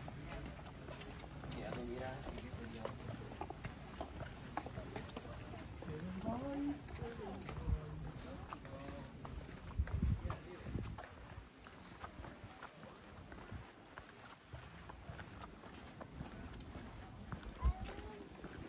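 Street ambience: passers-by talking, with footsteps tapping on the asphalt throughout. A few low thumps stand out, the loudest about ten seconds in and just before the end.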